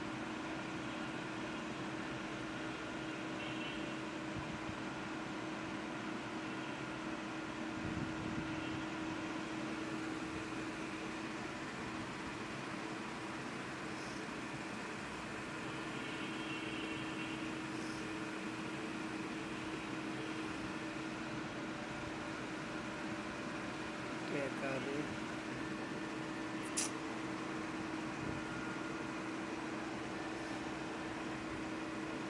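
Steady mechanical hum with a constant low tone over an even hiss, with a sharp click near the end.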